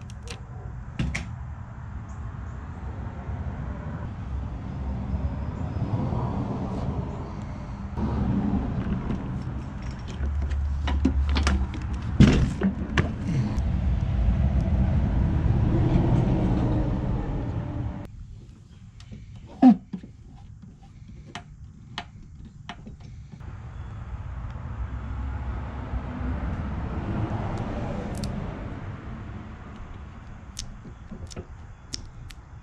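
Scattered taps and clicks of hands handling the plastic body of a pedal tractor while decals are pressed on. Under them is a low background rumble that swells and fades and drops away suddenly about two-thirds of the way through.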